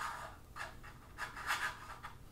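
Action figure's display base scraping and sliding on a tabletop as the figure is turned by hand, in a few short scratchy scrapes.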